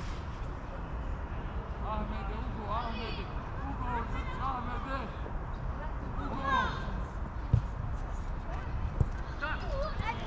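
Distant shouts and calls from players and coaches across a football pitch, over a steady low rumble, with a dull thud about seven and a half seconds in.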